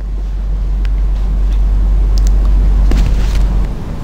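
Outdoor field sound: a loud, steady low rumble, like wind on the microphone or nearby traffic, with a few faint clicks over it.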